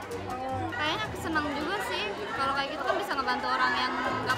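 Several people talking over one another at a busy shop counter, with background music underneath.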